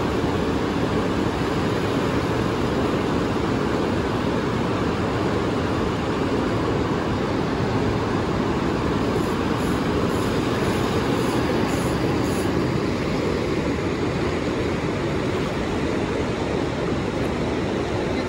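Steady rushing of a fast-flowing river, a constant deep wash of water.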